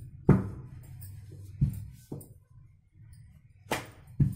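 Wooden rolling pin knocking against a stone rolling board while paratha dough is handled and rolled. A sharp knock comes just after the start, then three lighter knocks.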